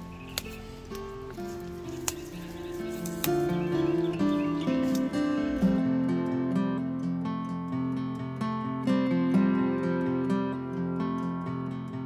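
Acoustic guitar background music, with plucked and strummed notes. About three sharp snaps come in the first three seconds: SunPatiens stems being snapped off by hand.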